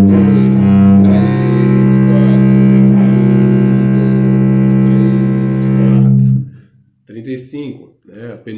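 Bowed cello playing a slow method exercise: a couple of low notes changing in the first second and a half, then one long held note that stops about six seconds in.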